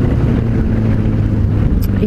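Suzuki Bandit 600 motorcycle's inline-four engine running steadily at road speed, heard from the pillion seat under constant wind and road noise.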